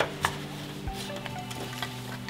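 Metal screw lid being twisted off a glass mason jar: a sharp click at the start and another a moment later, then a few faint ticks, over a steady low hum.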